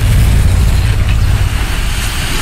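Loud, steady rumbling noise heavy in the bass with no clear notes: a cinematic trailer sound effect under a title card.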